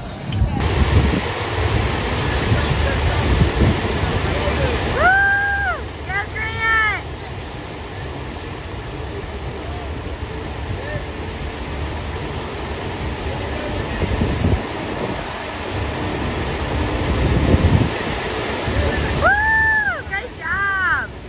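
FlowRider surf simulator's sheet of water rushing steadily under a bodyboarder. Short high-pitched cries come twice about five to seven seconds in and again near the end.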